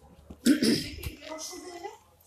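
A person coughs once, sharply, about half a second in, followed by a voice talking indistinctly.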